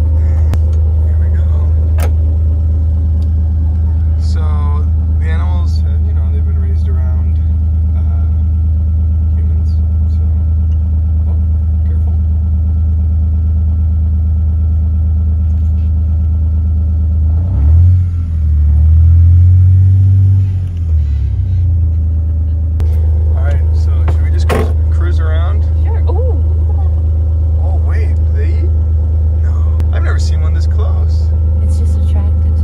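Utility vehicle engine running with a steady low hum. About two-thirds of the way through it swells and shifts in pitch, as when it revs or pulls away, then settles back.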